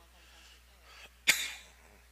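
A person sneezing once: a short intake of breath, then one sharp burst a little over a second in that dies away quickly.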